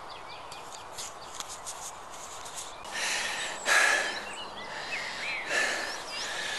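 Small birds chirping over a steady distant traffic drone. Loud breathy rushes of noise close to the microphone come in about halfway through and again near the end.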